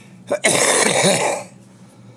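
A man coughing into his fist: a short cough, then a longer one of about a second.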